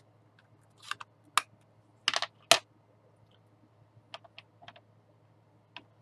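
Small hard plastic clicks and taps as a clear stamp on an acrylic block is inked on a Stampin' Up ink pad in its hinged plastic case. There are several sharp clicks in the first two and a half seconds, the loudest near the end of that run, then a few lighter ticks.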